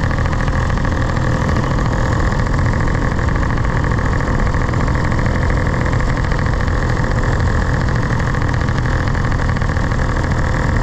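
Paramotor's engine and propeller running steadily at constant throttle in flight, a loud, even drone that neither rises nor falls.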